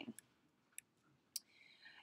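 Near silence with three faint, short clicks spread across the pause.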